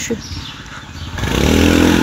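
A motor vehicle's engine passing close by on the street, swelling from quiet to loud over the second half, over a background of street traffic.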